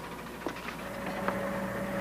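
Low steady hum under a hiss, with a sustained tone coming in about a second in and held.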